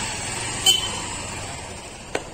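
Street background noise, steady, with one short sharp sound about two-thirds of a second in.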